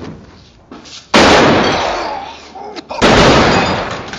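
Two loud pistol shots about two seconds apart, the first a little over a second in, each dying away over about a second.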